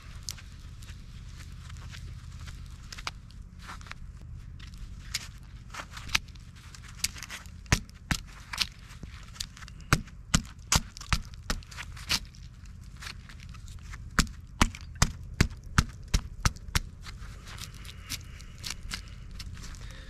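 A screw-in tree step being spun by hand into a pine trunk: irregular sharp clicks and creaks as its threads bite into the bark and wood. They come sparsely at first, then faster and louder through the middle, and thin out near the end.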